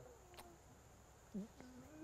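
Near silence: room tone during a pause, with a faint tick and a brief, faint voice-like sound later on.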